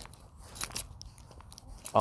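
A pause in reading aloud: low background noise with a few faint, scattered small clicks, then a man's voice resumes right at the end.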